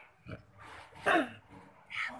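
A short, loud yelp-like vocal call about a second in, falling in pitch.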